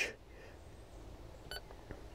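Uniden UM380 marine VHF radio giving one short key beep about one and a half seconds in as a button is pressed to step through its channel list.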